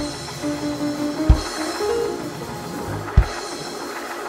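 Live church band music: held chord notes, with a kick drum hit about a second in and another about three seconds in.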